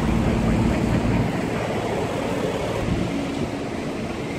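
Outdoor city street noise: a steady, fairly loud rumble of traffic.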